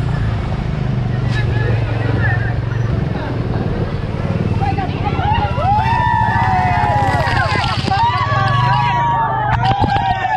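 A vehicle engine running steadily in road traffic. From about halfway, people shout and call out over it in rising and falling voices.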